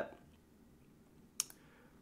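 A single short computer mouse click against a quiet room background, about one and a half seconds in.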